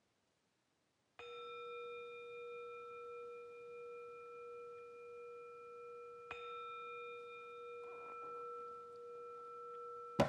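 A jeongju, a small Korean brass bowl-gong, struck twice about five seconds apart, the first stroke about a second in. Each stroke rings on in a long, steady, bell-like sustain.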